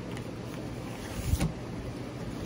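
A cardboard record sleeve being handled and lifted toward the microphone: a brief rustle and bump a little past halfway, over a steady low room hum.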